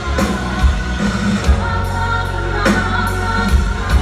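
Live hard rock band playing, with sung vocals over drums, guitars and keyboards. It is heard from within the audience of a concert hall.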